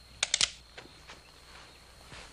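A few sharp clicks or knocks in an old film's soundtrack: a quick run of three or four about a quarter second in, then a few faint single ticks over low hiss.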